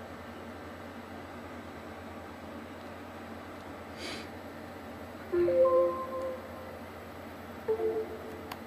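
Short startup chime from an AOC Breeze Android tablet's speaker as it boots after a factory reset: a few held musical notes about five and a half seconds in, then another brief pair of notes near the end, over a low steady hum.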